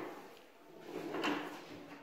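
A wooden door being pushed and moved by a small child: two short rubbing, sliding sounds, one at the start and a longer one about a second in.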